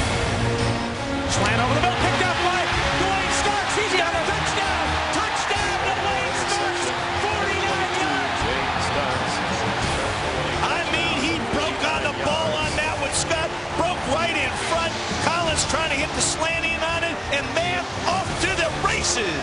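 Background music over stadium crowd noise, with many voices shouting and cheering more strongly in the second half.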